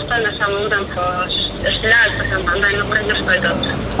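A man's voice speaking through a mobile phone's loudspeaker, thin and cut off above the telephone band, over a low rumble of street traffic.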